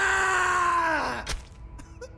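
A man's drawn-out, anguished cry, held on one strained pitch and then falling away and cutting off a little over a second in, followed by a single sharp click.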